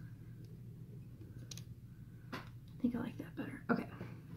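Faint whispered or murmured sounds from a person, mixed with a few soft clicks, over a steady low hum; the sounds cluster in the second half.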